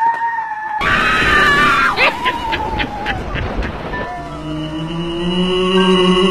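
High-pitched screaming during a chase, with a noisy burst and a run of sharp clicks in the middle; steady background music comes in about four seconds in.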